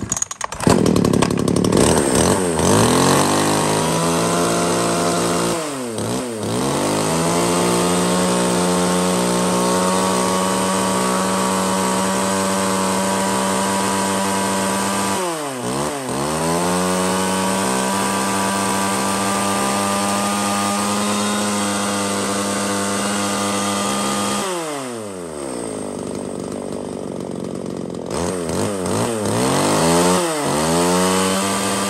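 Makita 333 two-stroke 33 cc chainsaw engine starting at the beginning and running, its speed briefly dipping and recovering twice, then dropping to a lower, quieter running near the end before picking up again.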